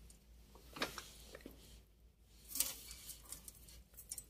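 Faint light clicks and rustling of steel wire heddles being handled on a loom shaft as yarn is threaded through them, with a few soft ticks about a second in and again past the middle.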